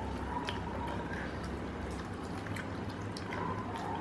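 Faint crackles and soft wet squishes of a piece of fried chicken being pulled apart by hand, its crust breaking and the meat tearing from the bone, over a low background hum that stops about halfway through.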